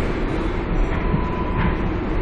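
Steady rumble of an R142A subway car running on the line, heard from inside the car, with a faint thin tone for about half a second in the middle.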